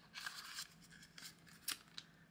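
Faint rustle of a laminated tracker card being slid into a clear vinyl cash envelope, followed by a sharp click near the end.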